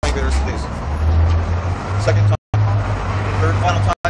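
A low, steady rumble of outdoor traffic-type noise, with faint voices above it; the sound cuts out for a moment about two and a half seconds in.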